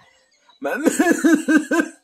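A young man laughing: a quick run of about seven rhythmic voiced "ha" pulses starting about half a second in.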